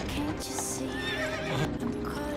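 A horse whinnying and its hooves clip-clopping over dramatic background music.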